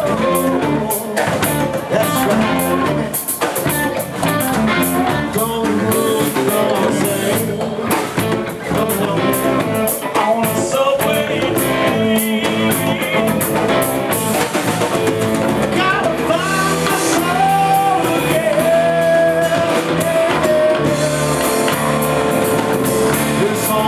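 Live rock band playing with electric guitar, bass guitar, drum kit and congas, and a lead singer.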